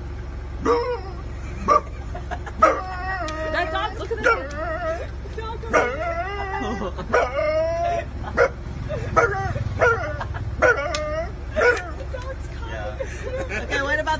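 A man imitating a dog with his voice: a few short barks first, then longer wavering howls and whines.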